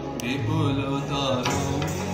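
Recorded Rabindra Sangeet playing: a solo voice sings a gliding melodic line over sustained accompaniment, with a few sharp percussive strokes.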